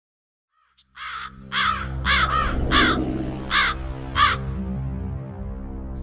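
A crow cawing about seven times in quick succession, over a low, droning music bed; the first second is silent.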